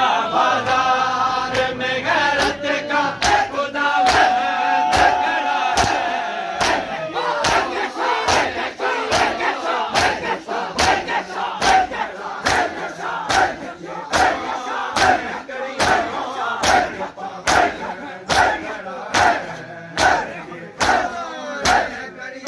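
A crowd of men doing matam, beating their chests with open hands in unison at about two strikes a second, along with loud crowd chanting. The chanting voices lead in the first few seconds, and the sharp, regular strikes grow stronger from about six seconds in.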